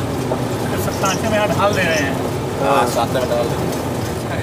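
Steady engine and road rumble heard from inside a moving vehicle on a rough dirt road, with faint voices over it.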